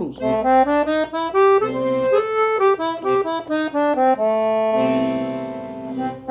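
Piano accordion playing a quick run of single notes up and down the A blues scale over a C major seventh chord, ending on a held chord that fades near the end.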